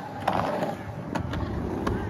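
Skateboard sliding along a flat metal rail, a scraping grind, with a few sharp clacks of the board hitting the rail and concrete over a low rumble of wheels rolling.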